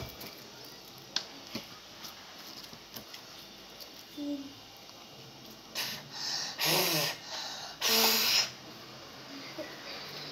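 A child's breathy giggling in a few loud bursts between about six and eight and a half seconds in, after a stretch of faint clicks and taps from play at the table.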